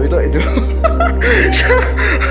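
Chuckling and laughing voices over steady background music.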